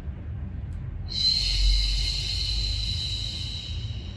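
A long, forceful exhale through pursed lips, a hiss that starts about a second in and fades out near the end: a deliberate Pilates breath, pushing the air out while the abdominals draw in.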